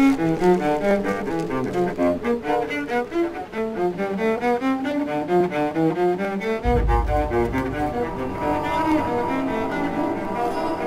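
Solo cello playing a quick, flowing run of notes. About two-thirds of the way in a deep low boom sounds under the playing, and a higher held tone joins near the end.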